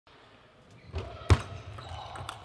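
A table tennis ball bounced on the table before a serve: quiet at first, then a soft knock and, about a second and a quarter in, one loud, sharp knock with a thud, in a large hall.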